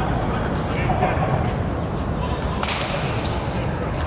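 A baseball bat hits a pitched ball once, a sharp crack about two and a half seconds in, over a steady low rumble.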